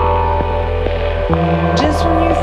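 Korg M3 synthesizer holding a steady, deep electronic drone under sustained higher tones, with a few faint clicks.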